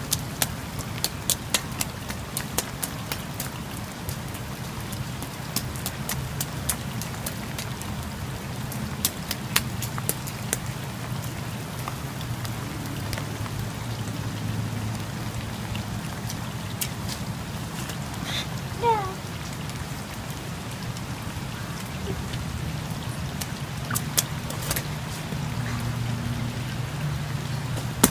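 Light rain falling, a steady hiss with many scattered sharp ticks of drops landing close by, more of them in the first half.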